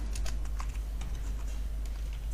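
Computer keyboard keys clicking in quick, irregular strokes as a formula is typed, over a low steady hum.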